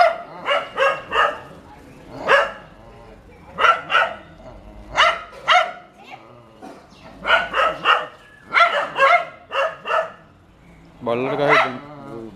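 A dog barking repeatedly in quick runs of sharp barks at a cobra reared up in front of it: alarm and threat barking at the snake. About a second before the end there is a longer, wavering sound.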